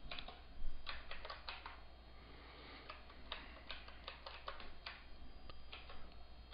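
Keys being pressed in an irregular run of short clicks as a sum is worked out, over a faint steady low hum.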